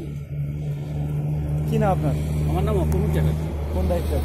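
A motor vehicle's engine running with a steady low hum under a man's speech.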